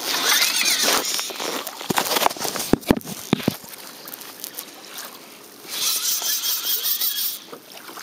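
Fly reel drag buzzing as a hooked false albacore pulls line off the reel, in two runs: one at the start lasting about a second and a longer one about six seconds in. Between them come a few sharp knocks against the kayak.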